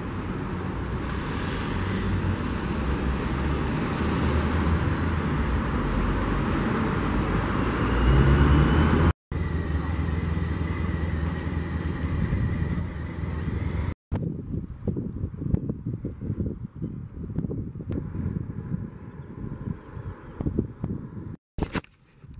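Outdoor ambience in three short clips cut together: a steady rumble like road traffic for about the first nine seconds, then a similar stretch with a faint high tone, then gusty wind buffeting the microphone. Each clip ends in an abrupt cut.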